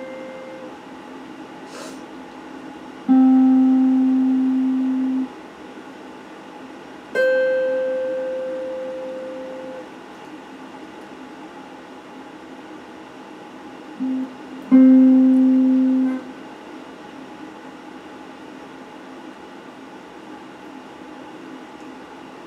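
Electric guitar played slowly as single plucked notes, four in all, each left to ring and fade for one to two and a half seconds with pauses between them. The last note dies away about two-thirds of the way through, and nothing more is played after it.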